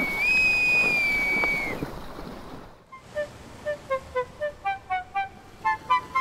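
A bosun's pipe blown in one long high whistle that steps up slightly in pitch near the start and stops a little under two seconds in. About three seconds in, a short jingle of quick, evenly spaced notes begins.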